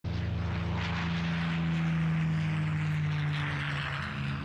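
A steady engine drone with a hum of several low tones, sinking slightly in pitch near the end.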